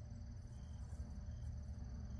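Quiet outdoor background: a low steady rumble with a faint, steady high-pitched insect trill, typical of crickets in the grass.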